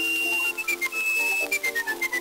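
A whistled melody over an instrumental accompaniment, on an early recording with no bass. It opens on a long high note, steps down in quick notes, holds another high note at about the middle, then runs down again.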